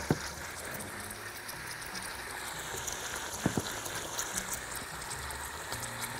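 Meat chunks sizzling steadily in hot oil in a pot, with one short knock about three and a half seconds in.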